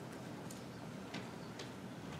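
Faint room tone with a few soft, irregular clicks.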